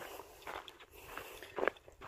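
Footsteps crunching through deep snow on a hiking trail, a few soft steps.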